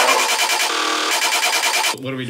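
Closing bars of a dubstep track: the bass has dropped out and a dense, steady synth texture in the middle and upper range plays on, then cuts off near the end.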